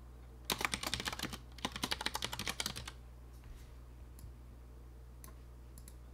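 Typing on a computer keyboard: two quick runs of keystrokes, each about a second long with a brief gap between them, followed by a few single clicks.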